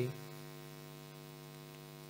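Steady electrical hum in the recording, a low buzz with many evenly spaced overtones that does not change.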